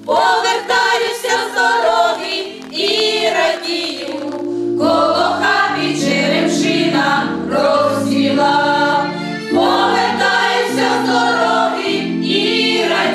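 A women's folk choir singing a song together in several voice parts, in phrases with short breaths between them.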